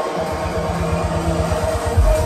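Deep house music playing loud over a club sound system, its deep bass coming back in with rapid rumbling pulses about a quarter second in.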